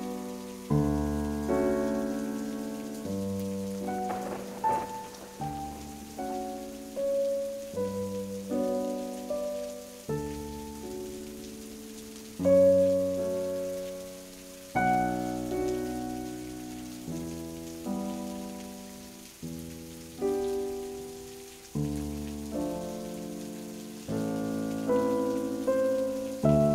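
Slow background piano music, chords struck every second or two and left to die away, over a soft hiss of rain-sound ambience.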